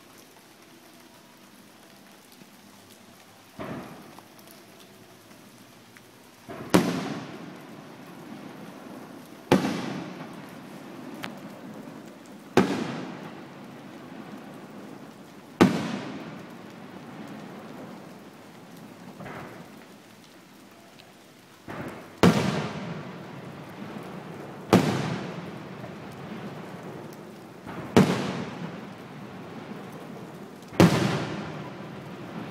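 Aerial firework shells bursting a few hundred metres away, loud: a sharp bang every few seconds, each followed by a rumbling echo that dies away. About eight big bursts, with a few smaller pops between them.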